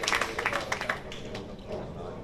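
Scattered hand clapping from a small audience, thinning out within about a second and leaving faint background noise.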